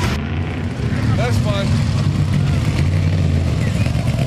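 Off-road race truck engine running loud and steady, with indistinct voices in the background.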